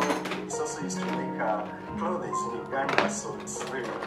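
Speech from a podcast playing in the room over soft background music, with a few light clicks and knocks.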